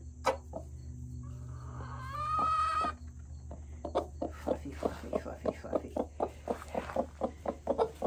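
Broody hen calling: one long, high, squawking call a couple of seconds in, then a fast even run of short low clucks, about five a second, the 'tuk, tuk, tuk' that sounds like a choo-choo train. It is the grumbling of a broody hen being put off her nest. A steady low hum runs underneath.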